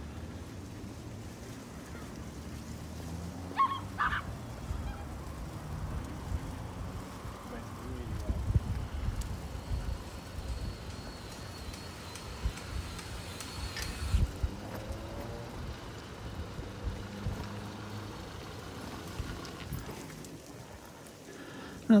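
Wind rumbling on the microphone and tyre noise from a bicycle rolling along a paved promenade, with a brief high call about four seconds in.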